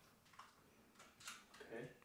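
Near silence: room tone, with a few faint, brief sounds in the second half.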